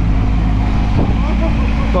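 Mini excavator's engine running steadily while it digs.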